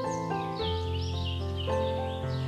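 Soothing piano music with sustained chords, new notes struck about half a second in and again near the end. Birds chirp over it in quick, high, repeated calls.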